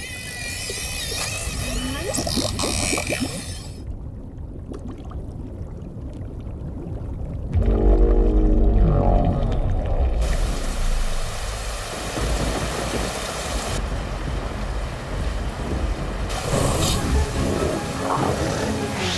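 Film score over underwater sound: a muffled low rumble, then a loud, deep swelling drone about eight seconds in. From about ten seconds a steady hiss of rain falling on a lake joins it.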